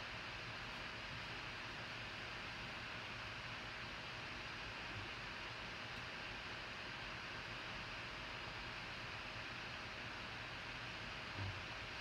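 Faint, steady hiss of room tone and microphone noise, with no distinct sounds.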